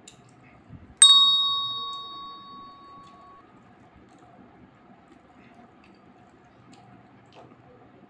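A single bright bell-like ding about a second in, fading away over about two seconds: a subscribe-button notification sound effect. Faint clicks of hand-eating are also there.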